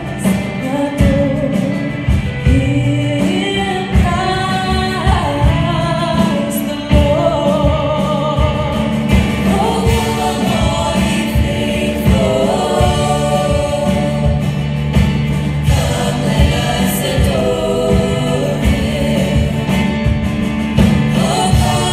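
A youth choir singing a Christmas song, with lead singers on handheld microphones, over steady instrumental accompaniment.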